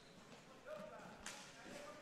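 Faint rink hockey play on a wooden court: quad roller skates rolling and sticks knocking, with faint distant voices.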